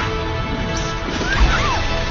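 Film soundtrack: music score under crackling electric-arc and crash sound effects, with a heavy thump about one and a half seconds in.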